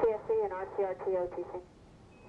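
A voice speaking over a radio link, thin and narrow like a two-way radio transmission, for about a second and a half, then only faint hiss.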